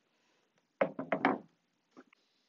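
Fabric-covered plywood panel set down on a wooden table: a quick run of several knocks, close together, about a second in.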